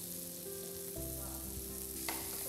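Small potato patties sizzling steadily in shallow hot oil in a frying pan while they are turned over with a slotted spatula.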